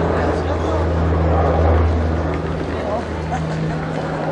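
A steady low motor drone, like an engine running, under the voices of passers-by; the deepest part of the drone fades about three and a half seconds in.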